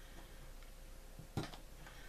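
One light click about one and a half seconds in, with a fainter tick just before it: a small pick working the wire spring clip out of a Penn 450SSG spinning reel's spool.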